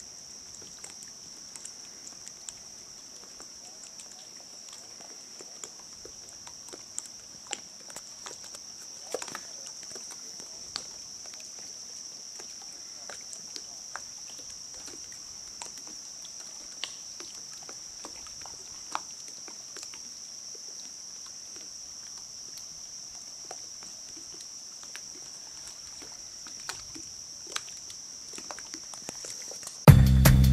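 Outdoor night ambience: a steady high-pitched insect chorus, with scattered faint clicks and ticks and no thunder.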